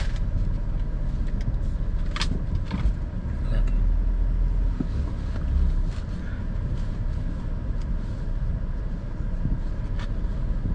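Car running and pulling away slowly, heard from inside the cabin with the driver's window open, its low rumble swelling for a couple of seconds around the middle. A few sharp clicks come in the first three seconds.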